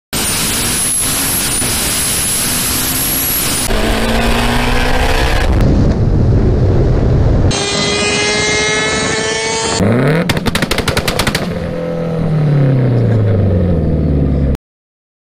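Turbocharged four-cylinder of a Mitsubishi Lancer Evolution X at full throttle, heard in a string of short cut-together clips. First a hard acceleration from inside the car with a high whine over the engine, then revving that climbs in pitch. Next comes a rapid burst of sharp pops and crackles from the exhaust about ten seconds in, and at the end the engine note falls in pitch.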